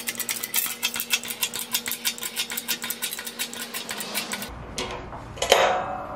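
20-ton hydraulic shop press running, a steady hum with rapid, even clicking as the ram forces down on a welded steel test piece and bends it. The run stops about four and a half seconds in, followed by a low rumble and a short louder sound.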